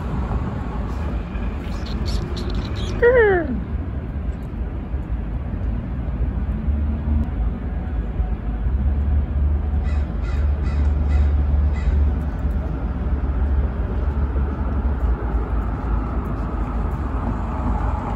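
An American crow caws once, a single falling call about three seconds in, over a steady low outdoor rumble.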